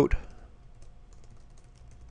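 Computer keyboard typing: faint, irregular key clicks.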